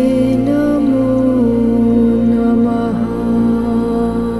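Devotional mantra chant music: a voice holding long notes that move between a few pitches, over a steady low drone.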